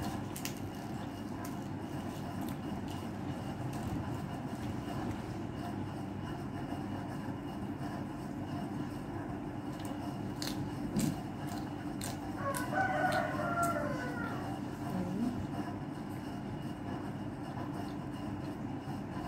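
A rooster crowing once, a wavering call of under two seconds about two-thirds of the way in, over a steady background hum.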